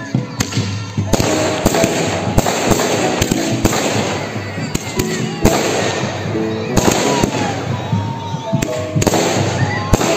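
Aerial fireworks bursting in an irregular run of sharp bangs and crackles.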